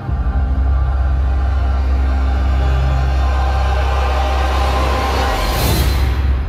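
Ominous film-trailer score: a deep bass rumble cuts in suddenly and holds under sustained tones. A bright whooshing swell rises near the end.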